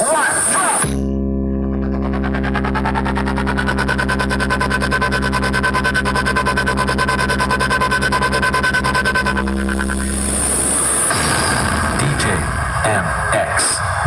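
Stacked DJ speaker box playing an electronic bass sound-test track. A spoken voice sample comes first, then a long held buzzing bass note with a rapid pulsing wobble for about nine seconds, then noisier music with voices near the end.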